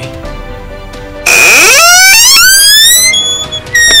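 Quiet background music, then a loud, shrill wail that rises steeply in pitch for about two seconds and breaks off. A second high, shrill wail starts just before the end.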